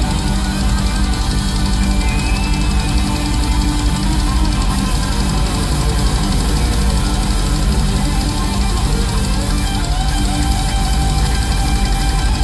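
A heavy metal band playing live, with electric guitars and a drum kit, loud and continuous without a break.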